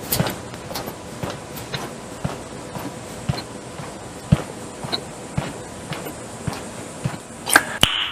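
Footsteps on a hard floor at a steady walking pace, about two steps a second, with two sharper knocks near the end.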